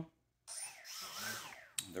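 A foam board flying wing's small electric motor and propeller are given a brief burst of throttle. The motor spins up and back down, its whine rising and then falling over about a second, and it stops with a click just before the end.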